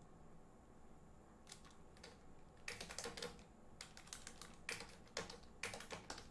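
Computer keyboard typing, faint: after a near-quiet start, a run of quick keystrokes begins a little before halfway and goes on in short bursts.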